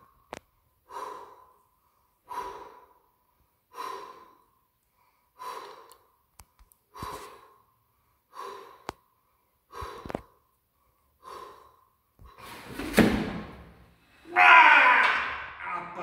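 A man breathing hard and forcefully, about one heavy breath every second and a half, while holding a 270 kg barbell at arm's length on a bench press. Near the end there is a sharp knock, then a loud, strained shout of effort.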